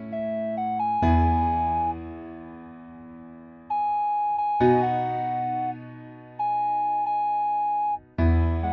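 Instrumental karaoke backing track of a slow ballad: electric piano chords over a bass line, with a held single-note melody line stepping from pitch to pitch above them. New chords strike about a second in and again just past halfway, fading between.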